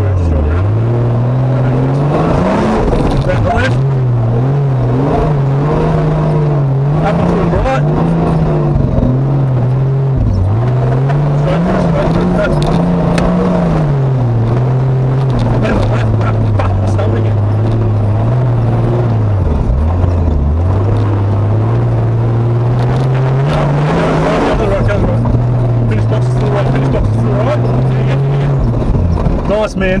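Turbocharged Nissan GQ Patrol's TB42 petrol straight-six driving hard on a rough dirt track, its engine note rising and falling again and again as the revs change, with steadier stretches in between. The level drops away near the end.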